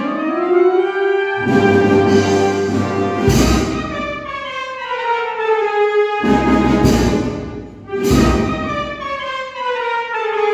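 Wind band of brass and woodwinds playing a Sevillian Holy Week processional march: held chords with slowly falling melodic lines. Drums and cymbals come in about a second and a half in and again around six and eight seconds, with heavy bass-drum strokes.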